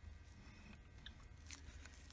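Near silence, with a few faint clicks and scrapes as a steel shaft is pushed out of a Harley-Davidson Shovelhead transmission case by hand.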